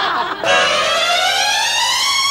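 An editing sound effect: one pitched, whistle-like tone with many overtones that glides steadily upward, starting about half a second in and still rising at the end.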